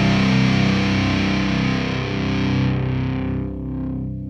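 Closing chord of a hard rock song on distorted electric guitar, ringing out and slowly fading. The treble dies away about three seconds in while the low notes keep sustaining.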